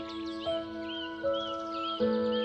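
Gentle piano music with held notes that change a couple of times, over birdsong: a bird repeats a short rising-and-falling chirp several times, high above the music.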